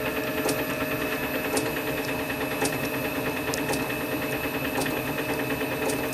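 A steady mechanical hum made of several even, level tones, with a faint tick about once a second.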